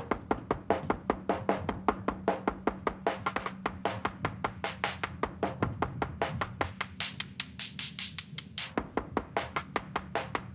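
Programmed drum-machine groove from a Groove Agent preset: an even run of sharp clicks, about four or five a second, over a steady low tone that drops out near the end. The groove is heard through Bloom's adaptive EQ with its high mids boosted and being swept upward from about 800 Hz to 1.2 kHz.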